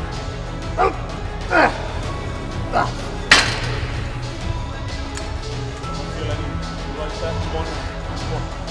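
Background music with a steady low beat. Three short voice sounds slide downward in pitch in the first three seconds, and a single sharp clank comes a little past three seconds in.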